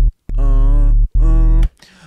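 Synthesized sub bass patch for a riddim dubstep drop, run through a saturator: a deep, loud bass playing held notes in a pattern, two notes of under a second each with a short gap, the last cutting off shortly before the end.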